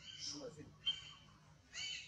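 Several short, high-pitched animal calls in quick succession, with a longer call that rises and falls near the end.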